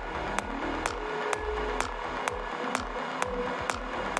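Psytechno DJ mix: a steady four-on-the-floor beat of a little over two beats a second, with a rolling low bassline pulsing between the beats and sustained synth tones on top.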